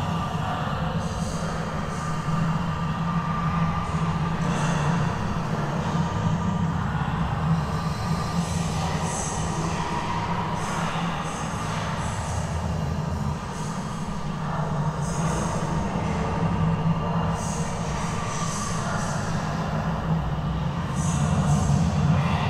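Dark ambient horror soundscape: a steady low rumbling drone, with high screeching textures that rise and fade every few seconds.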